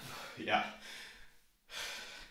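A man's voice close to the microphone: a short breathy "yeah", then a sharp intake of breath near the end.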